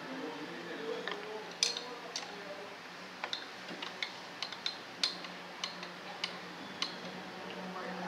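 Light, irregular metallic clicks and taps, about a dozen, as small parts are handled against the metal housing of a VE distributor-type diesel injection pump during assembly.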